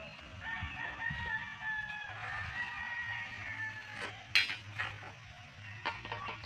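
A rooster crowing: one long crow of about three seconds, then a sharp knock about four seconds in.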